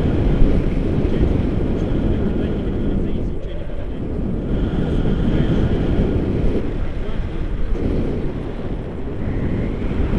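Wind rushing over the camera microphone of a tandem paraglider in flight: a loud, rough low rumble that swells and eases every few seconds.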